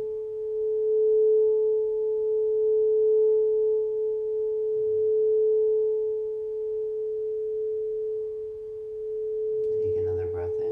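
Crystal singing bowl played by circling a wooden wand around its rim: one steady, pure ringing tone with a fainter higher overtone, gently swelling and easing in loudness.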